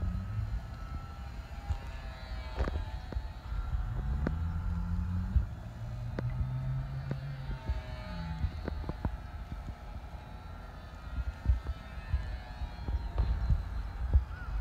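Battery-electric RC Sport Cub model plane's motor and propeller whining as it flies past overhead, the pitch sliding up and down as it comes and goes. A low rumble and scattered clicks sit underneath.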